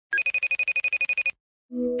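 Electronic video-call ringtone: a fast trill of about twelve beeps a second, lasting a little over a second. After a brief gap, background music starts near the end.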